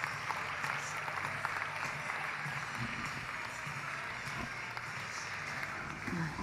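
Audience applauding steadily, with no break, as a speaker is welcomed onto the stage.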